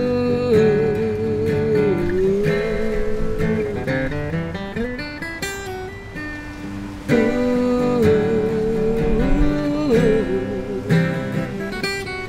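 Steel-string acoustic guitar strummed under a wordless "ooh" vocal. The voice is held long with a wavering pitch in two phrases, the second starting about seven seconds in.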